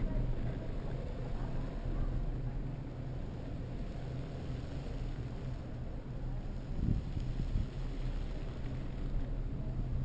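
Riding noise from a camera mounted on a bicycle: a steady low rumble of wind and tyres on the street.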